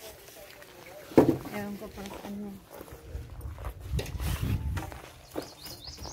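Voices talking quietly, with a sharp click about a second in and low rumbling handling noise in the second half.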